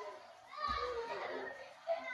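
Faint speech: a voice speaking briefly from about half a second in, for about a second, with quiet on either side.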